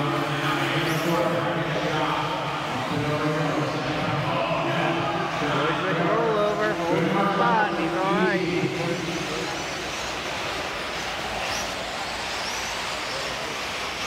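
A race commentator's voice over the public-address system of a large indoor arena, talking for the first nine seconds or so. After that only a steady background noise of the hall remains.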